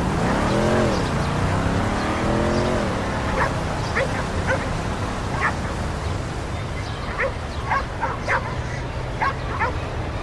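Recorded city ambience: a steady hum of distant traffic under a drawn-out tone that rises and falls twice in the first few seconds. A dog then barks in short yips, about ten times through the second half.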